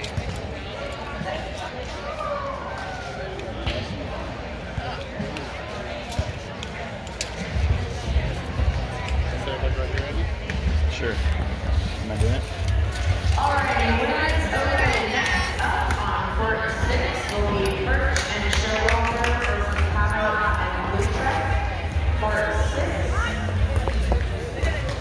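Background music playing in a large indoor sports hall, with distant voices. The music's bass comes in about eight seconds in and the sound grows louder after it.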